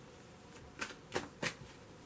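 A deck of tarot cards being shuffled in the hands, quiet at first, then three short card strokes about a third of a second apart in the second second.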